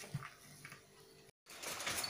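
Faint scattered clicks, then a short dead gap about halfway through. After it comes a steady haze of outdoor background noise.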